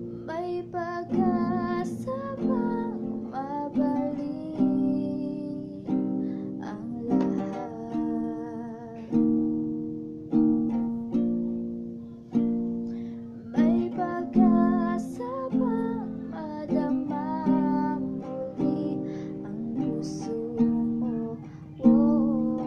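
Acoustic guitar strummed in chords, with a female voice singing over it, her held notes wavering with vibrato.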